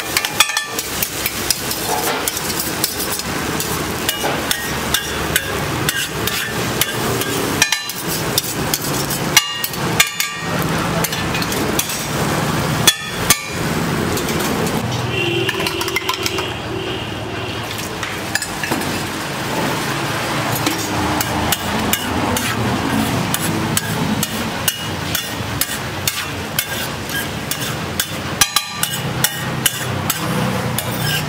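Metal spatula rapidly chopping and scraping egg on a flat iron griddle (tawa), a fast irregular clatter of metal striking metal.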